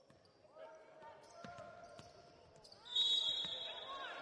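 Basketball dribbled on a hardwood court, with players' voices, then a sharp referee's whistle about three seconds in, held for about a second to stop play.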